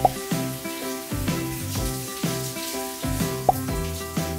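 Shower water spraying steadily under background music with a regular beat; two short rising blips, at the very start and about three and a half seconds in, as bath gel is squeezed out and shampoo pumped.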